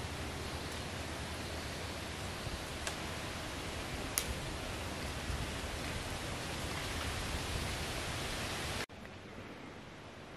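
Steady wind noise: a hiss like wind through tree leaves, with a low rumble of wind on the microphone. It drops abruptly to a quieter hush about nine seconds in.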